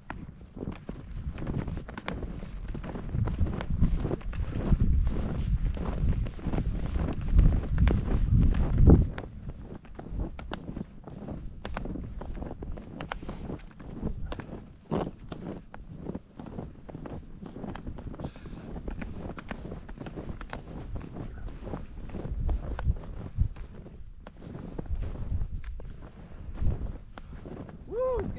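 Snowshoe footsteps crunching and swishing through deep snow in an irregular walking rhythm. A strong low rumble lies under the steps for the first nine seconds or so and stops suddenly, leaving the steps quieter.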